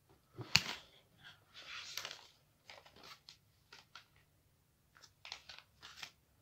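Small plastic building-kit pieces being handled: a sharp click about half a second in, a short rustle, then scattered light clicks.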